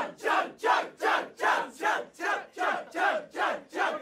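A group of voices chanting 'chug' in a steady rhythm, about two and a half shouts a second, urging someone to drink a bottle of beer in one go.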